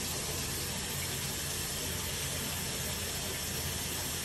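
Water running steadily from a bathroom faucet into the sink, an even hiss.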